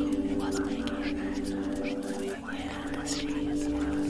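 Whispered voice over a steady ambient music drone of several held low tones; one of the tones drops out a little past halfway.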